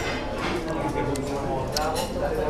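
Restaurant room sound: other diners' voices talking in the background, with a few light clicks.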